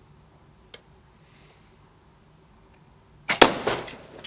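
A faint click under a second in, then a little over three seconds in a pressurised plastic Coke bottle holding petrol bursts with a loud, sharp bang, followed by the rush of the petrol catching fire.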